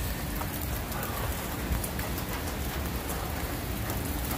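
Steady hiss of rain falling on concrete pavement.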